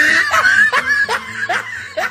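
A person laughing in short, repeated high-pitched bursts.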